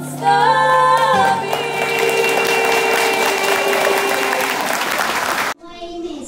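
Two girls singing a duet, ending on a long held note while the audience breaks into applause about a second and a half in. The sound cuts off abruptly near the end.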